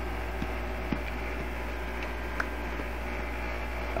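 Steady low hum with a faint even hiss, broken by a few faint small clicks.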